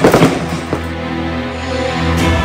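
Firecrackers crackling in a rapid, dense string that dies away about a second in, over music that carries on throughout.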